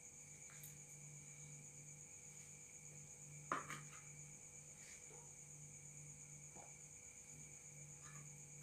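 Faint, steady chirping of crickets over a low hum, broken by a few soft clicks; the loudest comes about halfway through.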